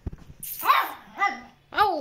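Chihuahua barking: three short, high-pitched barks, about half a second in, a little after one second, and near the end.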